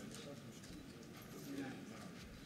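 Faint background murmur of voices with scattered light taps and clicks.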